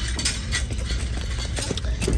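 Scattered clicks and rustling of a plastic-wrapped pregnancy pillow being picked up and handled close to the microphone, over a low steady hum.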